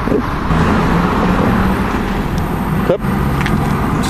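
Steady road traffic noise with a vehicle engine running nearby, heard as a low, even hum. The sound drops out briefly about three seconds in.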